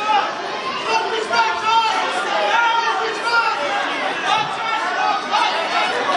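Many spectators' voices talking and calling out at once in a gym hall.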